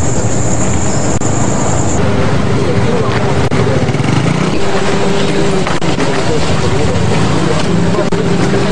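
An engine running steadily with a low hum, under indistinct voices; a thin high whine stops about two seconds in.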